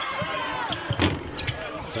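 A basketball bouncing on a hardwood court a few times, as sharp knocks spread over about a second and a half, over the steady noise of an arena crowd.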